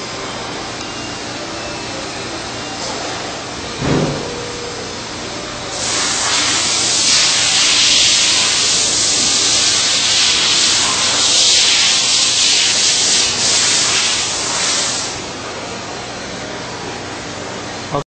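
Grinder on a carbide tool grinder running steadily. From about six seconds in to about fifteen seconds a loud, high hiss comes in as the wheel grinds the carbide cutter's tip, then drops back to the running machine.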